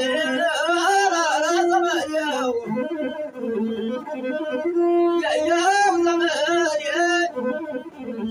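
A man singing in a wavering, ornamented voice over a masinko, the Ethiopian one-string bowed fiddle, which plays short repeated notes. The voice drops out about two and a half seconds in, leaving the masinko alone, returns for a second phrase a little past the middle, and stops again near the end.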